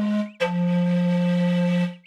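Breath blown across the mouth of an empty bottle, giving low, breathy hoots of steady pitch: a short note ends, then a slightly lower one starts about half a second in, is held for about a second and a half and stops just before the end.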